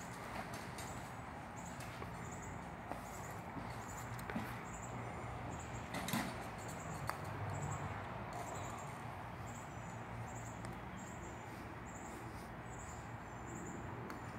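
Quiet outdoor ambience with a faint high chirp repeating about twice a second, and a single sharp tap about six seconds in.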